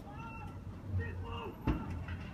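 Raised voices calling out briefly over a low pulsing hum, with a sharp knock near the end.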